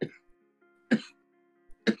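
A person coughing, three short coughs about a second apart, over quiet background music.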